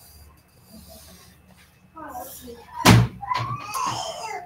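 A single sharp, loud thump about three seconds in, with voices in the background before and after it.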